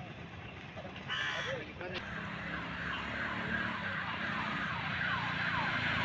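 Outdoor roadside ambience: a bird repeating short falling chirps several times a second over a low, steady traffic hum, with faint voices.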